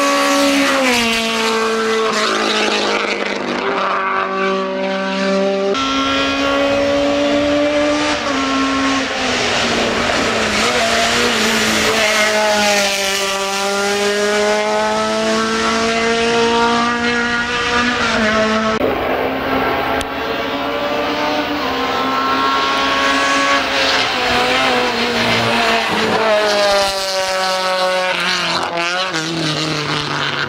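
Peugeot 306 Maxi rally car's four-cylinder engine revving hard on full throttle, its pitch climbing and dropping back again and again through gear changes and lifts for corners. The sound changes abruptly twice, about 6 and 19 seconds in.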